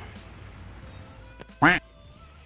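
One short, loud call or vocal sound about one and a half seconds in, over faint steady background music.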